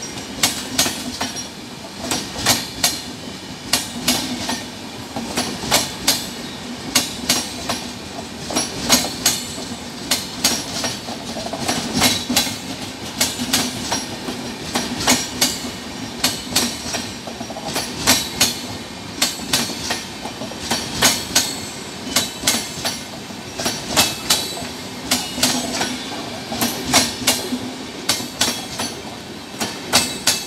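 Cholan Superfast Express's LHB passenger coaches rolling past at speed, their wheels clicking in quick clusters over the rail joints again and again, over a steady low drone and rumble of the running train.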